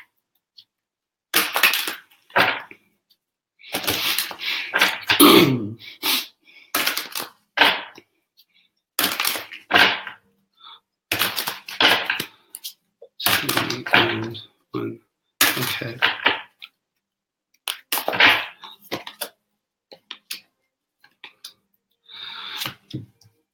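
A tarot deck being shuffled by hand before cards are drawn: a run of rustling, riffling bursts a second or two long, with short pauses between them.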